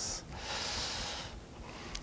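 A person's breath: a short sharp intake, then a longer breath lasting about a second.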